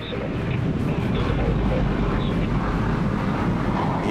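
F-16 fighter jet's turbofan engine, a Pratt & Whitney F100, running at full power through its takeoff run and liftoff. The sound is a loud, steady roar that builds over the first half second and then holds.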